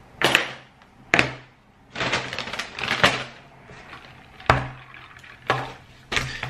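A handful of sharp knocks and clacks as things are set down on a table: a set of keys, a paper takeout bag that rustles about two to three seconds in, and a drink cup.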